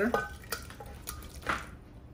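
A spoon scraping soft peeled tomatoes off a frying pan into a glass blender jar, with small clicks and wet drops and one sharper knock about one and a half seconds in.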